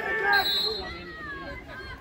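Mostly speech: spectators talking close by, with a brief high steady tone about half a second in.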